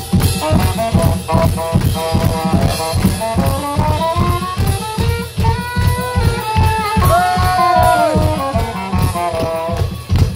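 Live band music: a saxophone melody with bending notes over a fast, steady percussion beat, with keyboard and acoustic guitar.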